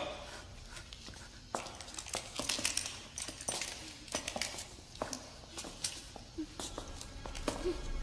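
Faint, irregular clicks and rustles with no steady sound or rhythm.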